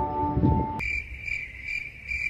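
Crickets chirping in a regular high pulse, two to three chirps a second, after background music cuts off just under a second in.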